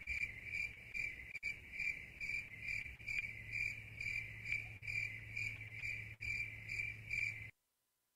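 Cricket chirping sound effect, a steady run of about two chirps a second that cuts off suddenly near the end: the comic "crickets" cue for an awkward silence.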